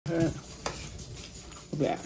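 A single sharp crackle as the crispy crust of a piece of fried chicken is torn apart by hand, between short bits of a person's voice.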